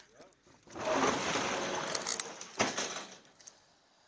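Metal roller shutter garage door being lifted and rolling up: a couple of seconds of loud metallic noise, with a sharp knock just before it stops.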